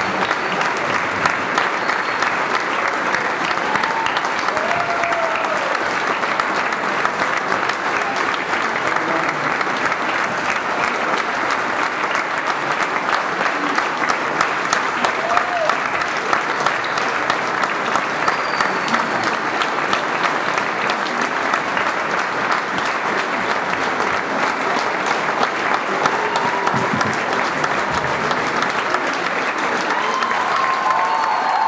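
A large audience applauding steadily throughout, with scattered voices calling out over the clapping.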